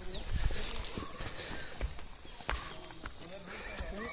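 Footsteps of several people walking on a dry, stony dirt trail, irregular knocks of shoes on earth and stones, with faint voices in the background.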